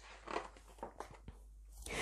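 Faint paper rustling as a page of a hardback picture book is turned, with a few soft short swishes.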